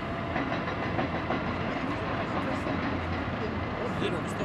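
Steady outdoor ambience at a working marble quarry: an even rumble and hiss with no distinct events.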